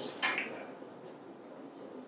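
A lull in a meeting room: quiet room tone, with a brief soft noise near the start.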